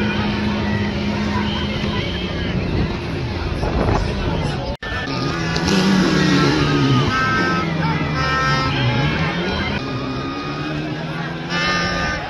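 Rally car engine running at speed, its pitch falling and rising several times as it revs through the gears, with voices and music mixed in. The sound cuts out for an instant just under five seconds in.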